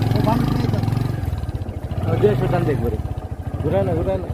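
Men's voices talking in short bursts over a continuous low rumble.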